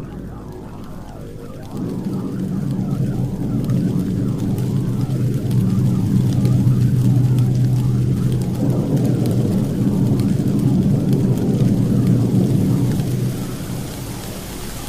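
Wordless intro of an electronic trance track: sustained low synth chords with a rain and thunder sound effect. The chords swell about two seconds in and fall back near the end.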